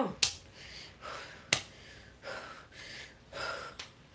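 A woman taking a series of audible breaths to calm her anxiety. Two sharp clicks come in between, one just after the start and one about a second and a half in.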